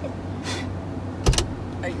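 Tesla Model S rear liftgate being popped open: a short rush of noise about half a second in, then a sharp clunk a little over a second in as the latch releases and the hatch begins to rise, over the car's steady low hum.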